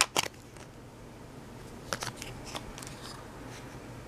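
A small plastic wax-melt tub being opened by hand: a few short, sharp clicks and crackles of thin plastic at the start, and again about two seconds in.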